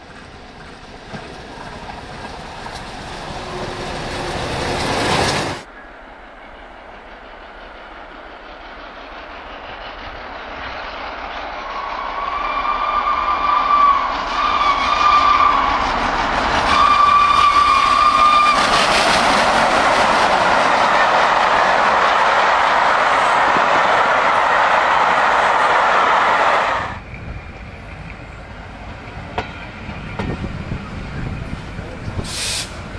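A steam locomotive approaching at speed, its noise growing louder until it cuts off suddenly. Then a second train draws near and sounds its whistle in three short blasts. It passes loudly with wheel and rail noise until a sudden cut near the end.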